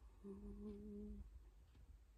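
A person's short, faint closed-mouth hum at a steady pitch, lasting about a second, against near-silent room tone.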